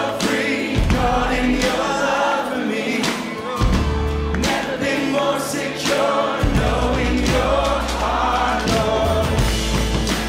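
A group of voices singing a contemporary Christian worship song with a band, a sustained bass underneath and a regular beat.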